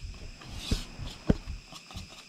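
A whisk stirring thick batter in a bowl: soft scraping with a couple of sharp clicks as the whisk knocks the bowl, about a third of the way in and again past halfway.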